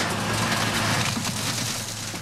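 Car crusher running in a scrapyard: a steady, dense hiss of machinery over a low, constant hum.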